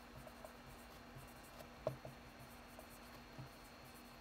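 Blue Expo dry-erase marker writing on a whiteboard: faint strokes and small ticks as the letters go down, with one sharper tap of the marker about two seconds in.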